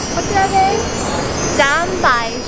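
A woman's excited voice in short exclamations, with steady street traffic noise underneath.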